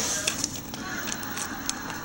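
Rustling and light crackling of a duct tape model being handled and turned close to the microphone, with a few small clicks.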